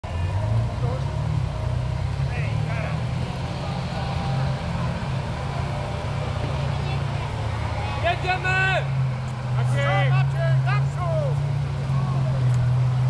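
A motor vehicle's engine idling steadily, with people's voices around it, clearer in the last few seconds.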